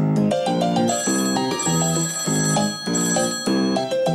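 Upbeat jingle music for a TV segment: a chord pattern repeats about twice a second, with bright high tones held above it.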